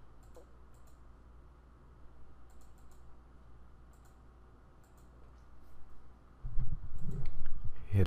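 A few faint, scattered computer mouse clicks over a low steady hum, as stamps are selected in a list. In the last second and a half comes a louder, low muffled noise.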